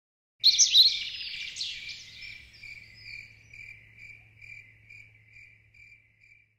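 Nature sound effect: a short flurry of bird chirps about half a second in, then a high cricket-like chirp repeating about twice a second and fading away.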